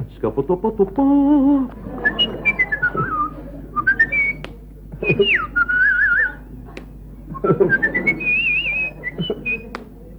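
A man whistling in short phrases: runs of notes stepping down and then up, a sharp swooping fall into a wavering held note, and a rising run ending in another wavering note. Near the start there is a hummed vocal sound with a few mouth clicks.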